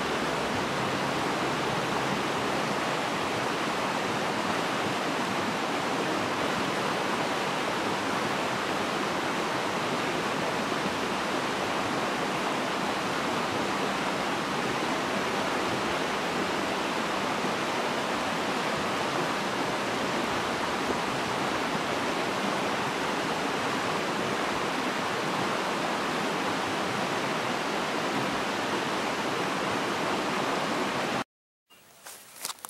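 Shallow rocky stream rushing over stones through a white-water riffle: a steady, even rush of water.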